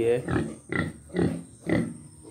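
A white sow giving a run of short grunts, about two a second, as it noses close to the microphone.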